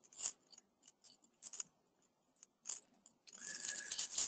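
Near silence with a few faint, short clicks, and a faint noise rising just before the end.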